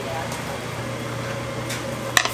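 Steady kitchen noise of open gas burners under earthenware bowls of stew boiling hard, over a constant low hum.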